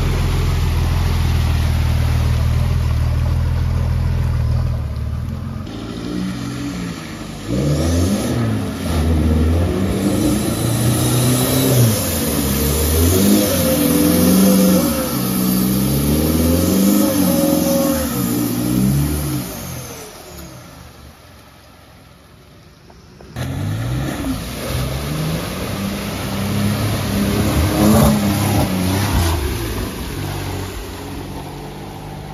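Four-wheel-drive engines pushing through deep mud holes. A steady low engine note gives way to repeated revving that rises and falls with the throttle. It fades away about twenty seconds in, then cuts suddenly to another engine revving hard.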